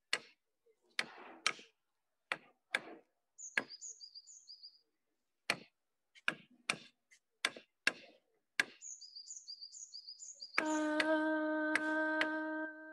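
Frame drum struck with a beater in slow, irregular single beats. Between the beats a bird chirps in quick repeated two-note phrases. Near the end a woman's voice comes in on a long held sung note.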